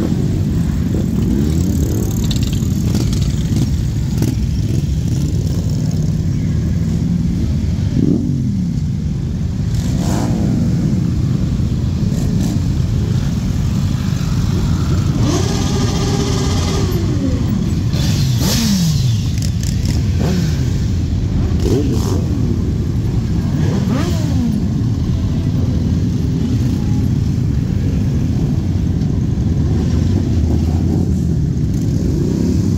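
A large group of motorcycles, cruisers and sport bikes, rumbling steadily past at low speed, with single engines revving up and dropping back several times.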